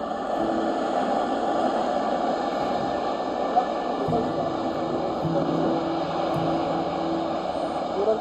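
Steady rushing sound of surf and wind, with soft background music holding long low notes over it.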